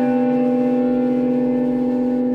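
Chamber ensemble holding a long, steady chord.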